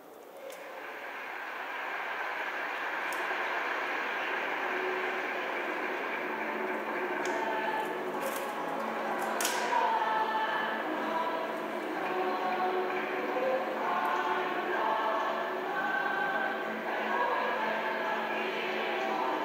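A choir singing. The sound starts soft and swells over the first few seconds, and the voices stand out clearly from about six seconds in.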